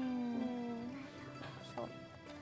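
A drawn-out voice trailing off with a slow fall in pitch over about the first second, then soft background music.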